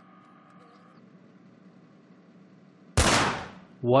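A single gunshot sound effect about three seconds in: a sudden loud crack that fades out in under a second, after a few seconds of faint room hum.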